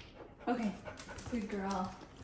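A dog whimpering briefly, mixed with a woman's voice giving it a command.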